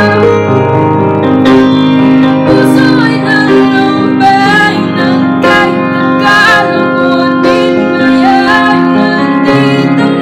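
A young woman singing in Tagalog while accompanying herself on an upright piano, with held piano chords under the voice.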